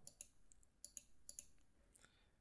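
Several faint computer mouse clicks over near silence.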